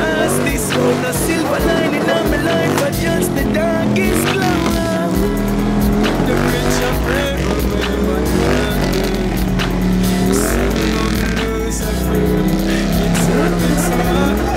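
Motorcycle engines revving again and again, their pitch rising and falling, over music with a steady deep bass.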